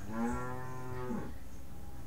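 A cow mooing once: a single call of a little over a second that drops in pitch at the end.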